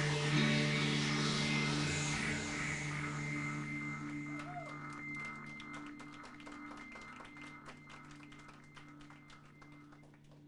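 A live techno-pop band's final chord ringing out: held keyboard and guitar tones fading away slowly and steadily. Scattered faint clicks come through in the second half as the chord dies away.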